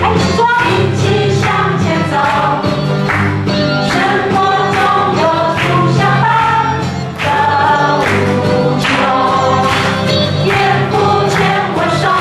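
A church praise band playing a worship song while many voices sing the melody together. Bass notes and regular drum beats run underneath, with a brief drop in the music about seven seconds in.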